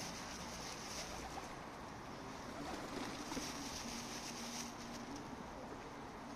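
Feral pigeons feeding in a flock, one giving a low coo about four seconds in, over a steady background hiss.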